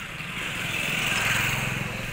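A small motorcycle or scooter engine passing by, swelling to its loudest about halfway through and then fading.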